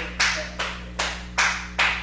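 Steady rhythmic hand clapping, about two and a half claps a second.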